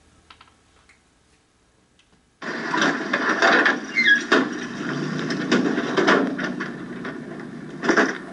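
Television soundtrack heard through the TV's speaker. It is near silent for about two seconds, then a noisy scene sound starts suddenly, with scattered knocks and a short falling squeal.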